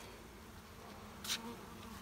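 Faint, steady buzzing of honeybees from a swarm moving into a newly set wooden hive, with a brief scrape about a second and a half in.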